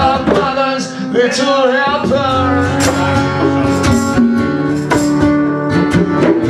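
Live acoustic music: a strummed acoustic guitar with a voice singing for about the first two seconds, then the guitar carries on with strummed chords.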